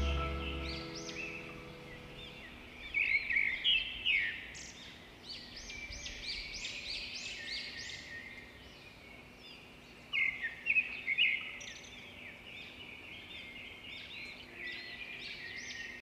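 Songbirds chirping: many short, quick calls overlapping, louder in clusters about three seconds and ten seconds in. Background music fades out in the first second or two.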